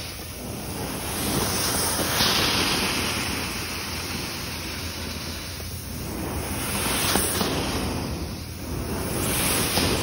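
Carpet-cleaning extraction wand working over carpet, a steady rush of strong vacuum suction and spray jets that rises and falls every few seconds.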